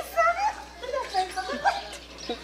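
People's voices talking and exclaiming, with short rising calls.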